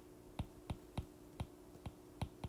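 Light taps on an iPad's glass screen as words are written on it by hand: short, sharp clicks about three times a second, unevenly spaced, over a faint steady hum.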